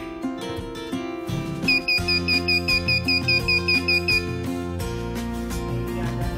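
Piezo buzzer of an Arduino motion-sensor alarm beeping rapidly and evenly, about five high beeps a second for about two and a half seconds, starting under two seconds in: the alarm going off. Guitar music plays underneath.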